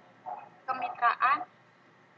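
A person's voice saying a few words over an online video call, thin and narrow like a telephone line: a short sound about a quarter second in, then a louder stretch of speech ending at about one and a half seconds.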